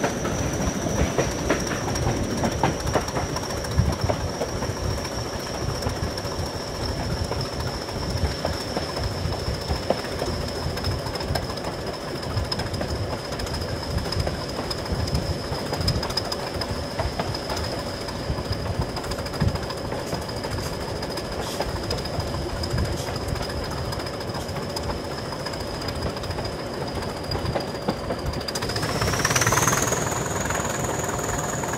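English Electric Class 20 diesel locomotive, its eight-cylinder 8SVT engine working under power, with a high steady whistle that slowly sinks in pitch and wheels clicking over rail joints. Near the end the whistle rises and the engine grows louder.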